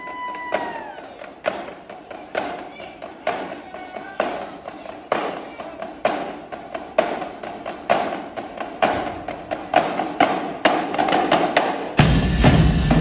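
High school drumline playing a sparse, quiet passage of sharp taps and clicks, a couple a second, with no bass drum. A steady whistle tone sounds at the start and dips and stops about a second in.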